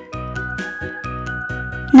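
Light children's background music: a tinkling melody of held tones over a steady low beat.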